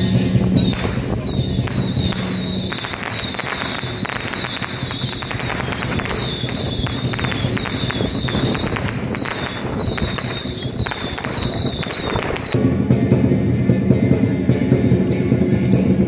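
A string of firecrackers crackling in a rapid, dense run that stops abruptly about three-quarters of the way through, leaving procession music with drums.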